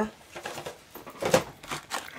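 Plastic craft packaging crinkling and rustling as it is handled, with a sharper crackle a little past halfway.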